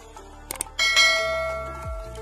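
Sound effects of an animated subscribe button and notification bell: a quick double click about half a second in, then a bright bell ding that rings out and fades over about a second. Background music with a steady beat plays underneath.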